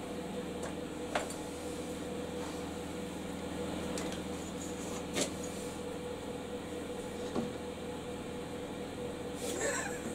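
Steady electrical hum from a switched-on machine, with a few faint clicks and taps.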